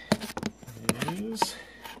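Camera handling noise: several sharp taps and rubs as the camera is worked into a tight spot and knocks against parts around it.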